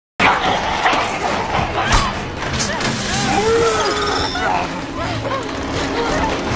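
Film soundtrack: a few sharp knocks in the first two seconds or so, then a dog whining in rising and falling calls.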